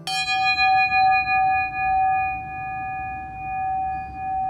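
A hanging metal bell, a flat pagoda-shaped plate, struck once and left ringing: one clear tone with several higher overtones that die away first, the main tone swelling and fading slowly as it rings on.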